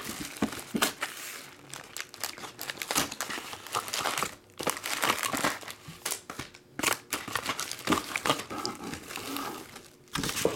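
Plastic shrink wrap and foil trading-card pack wrappers crinkling in an irregular run of crackles as a hobby box is unwrapped and its packs are handled and stacked.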